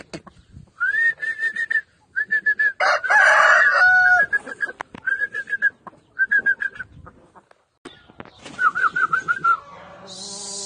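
Chickens calling in a run of short, repeated clucks, with one louder call about a second long about three seconds in.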